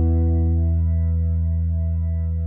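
The closing chord of an indie rock song, a guitar chord with effects held and ringing out as it slowly fades.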